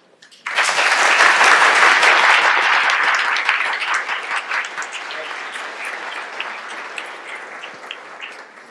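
Audience and panel applauding. The clapping starts suddenly about half a second in, is loudest over the first couple of seconds, then slowly dies down to scattered claps near the end.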